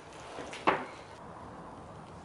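A single clink of a spoon against a glass mixing bowl less than a second in, with a brief ring.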